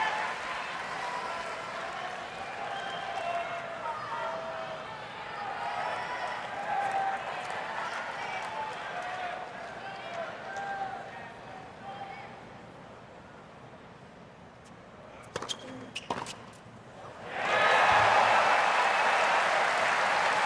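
Spectators murmuring in a tennis stadium, then a tennis ball bounced several times on the hard court before the serve. Crowd noise rises sharply and loudly near the end.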